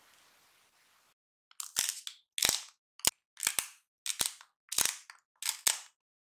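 Coarse sea salt being crushed over focaccia dough: about seven short, crackling crunches, one every half second or so.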